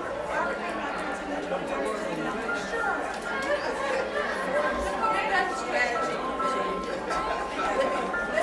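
A congregation chatting among themselves, many voices overlapping indistinctly in a large reverberant sanctuary. Faint music with held notes plays underneath, clearer in the second half.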